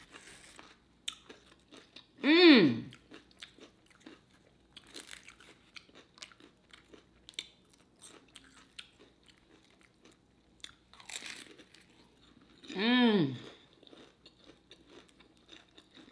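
Close-up crunching and chewing of a crisp fried lumpia egg roll, a scatter of small crackling bites and mouth sounds. A woman's voice gives two brief hums, one about two seconds in falling in pitch, the louder of the two, and another near the thirteen-second mark.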